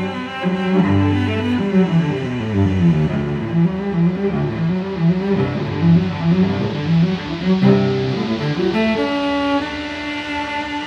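Instrumental background music, with a low melodic line moving note to note and higher held notes coming in near the end.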